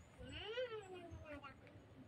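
A cat meowing once: a single drawn-out meow of about a second that rises and then falls in pitch.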